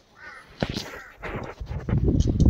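A bird calling a few times in short arching calls, with a low rumble building near the end.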